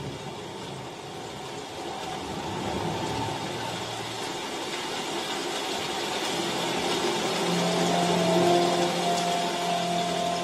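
Zebronics Music Bomb X Bluetooth speaker playing a track at maximum volume: a noisy, rumbling passage that grows louder, with sustained musical notes coming in about three-quarters of the way through.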